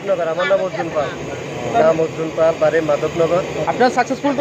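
A man speaking, over a steady low mechanical drone.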